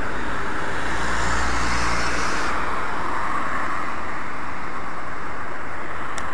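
Steady street traffic noise, with a vehicle's low rumble passing by about a second in.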